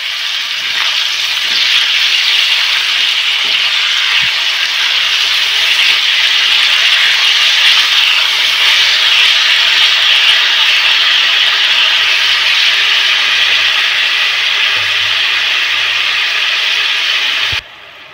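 Mixed vegetables (cauliflower, carrot, potato, tomato) sizzling steadily in hot oil in an iron kadai, turned now and then with a silicone spatula. The sizzle cuts off abruptly just before the end.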